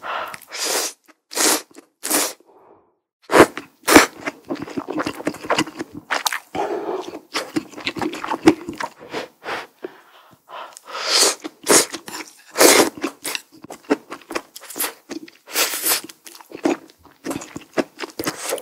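Close-miked eating of miso vegetable ramen: noodles slurped from a spoon in several longer bursts, about a second apart near the start and twice around the middle, with busy wet chewing and mouth sounds between.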